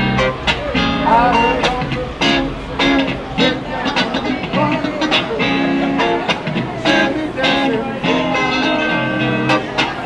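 Guitar music played live, with a beat, and a crowd's voices mixed in.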